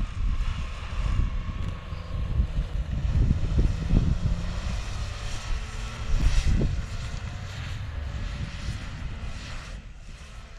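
A Subaru Outback wagon's engine revving up and down as the car slides through snow on a rallycross course; the engine sounds rough. Heavy wind rumble on the microphone runs underneath.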